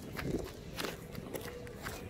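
Footsteps on gravel at a steady walking pace, about two steps a second.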